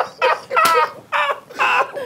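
Hearty laughter breaking into a few short, high-pitched, gasping bursts.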